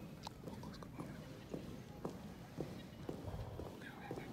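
Footsteps of a squad marching in step on a carpeted floor: soft knocks about twice a second, some with a sharper click.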